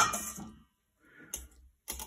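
A few light clicks of metal kitchen tongs against a glass jar as artichoke pieces in oil are handled, with quiet between them.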